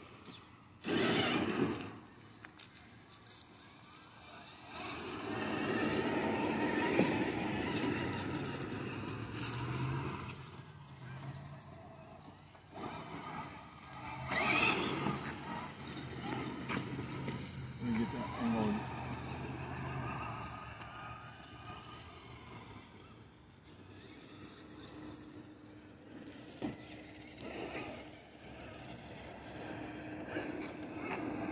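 Axial SCX6 Honcho radio-controlled rock crawler driving slowly, its electric motor and drivetrain running with a steady low hum, and two brief loud noises, one about a second in and one near the middle.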